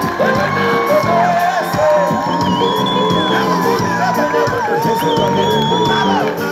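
Live band music with a high melody line of long held notes over steady chords, one note wavering about five seconds in, and a crowd cheering under it.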